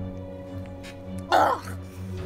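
A person coughs once, sharply, about a second and a half in, just after drinking a sauce from a mug. Background music with long held notes plays underneath.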